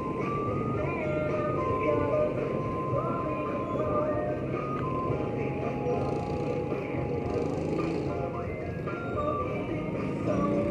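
Busy street traffic, with motorcycle and tricycle engines running as they pass, mixed with music and scattered voices.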